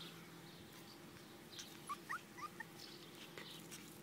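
West Highland White Terrier puppy whimpering: a few short, high, rising squeaks about halfway through.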